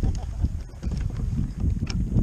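Wind rumbling on the microphone aboard a kayak, uneven and gusty, with a brief sharp click near the end.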